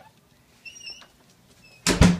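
A door being shut with a sudden loud bang near the end, after a few faint, short high squeaks.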